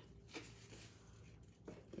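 Near silence, with faint rustling of sheets of patterned cardstock paper being handled and turned over, briefly about a third of a second in and again near the end.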